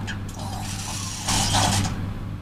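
Servo motors of a voice-controlled Optimus Prime robot toy whirring as it moves its arms, louder in a short burst about a second and a half in, over a steady low hum.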